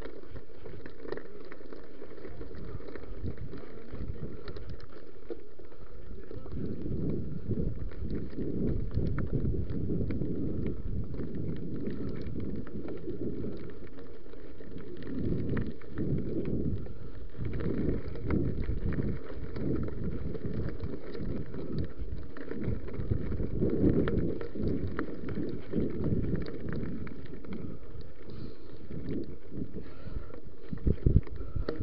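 Mountain bike ridden over a loose gravel trail: tyres rolling and crunching on stones and the bike rattling over bumps, with wind buffeting the body-worn camera's microphone. It gets rougher and louder in stretches.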